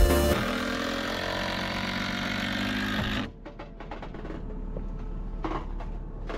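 Electronic background music that stops about three seconds in, followed by quieter building-site work sounds: short knocks and brief bursts from a cordless drill-driver working on the timber framing.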